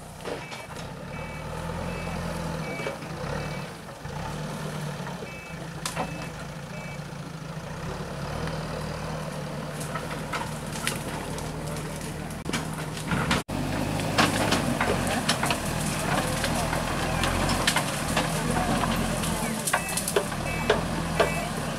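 A heavy vehicle's engine running steadily, with a reversing alarm beeping in two short runs during the first seven seconds.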